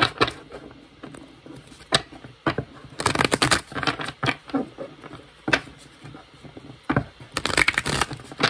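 A deck of tarot cards being shuffled by hand, the cards sliding and slapping against each other in irregular bursts with sharp clicks. The shuffling is loudest about three seconds in and again near the end.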